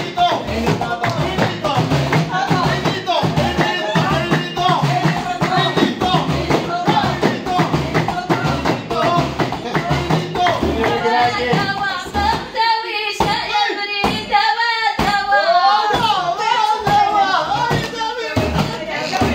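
Group of women singing a folk song together to hand-beaten frame drums and clapping in a steady rhythm. After about eleven seconds the deep drum beats drop out while the singing and clapping go on.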